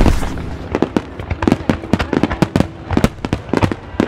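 Fireworks going off: a rapid, irregular string of sharp bangs and crackles, several a second.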